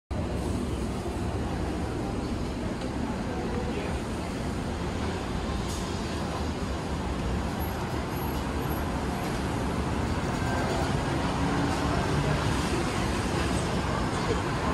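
Steady road traffic noise: a continuous low rumble of passing vehicles.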